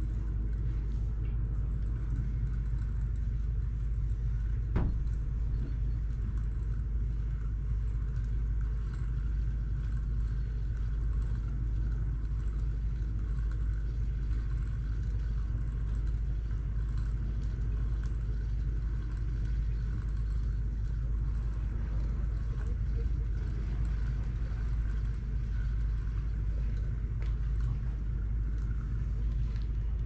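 Steady low mechanical drone, like a running engine or generator, holding an even level throughout, with one light click about five seconds in.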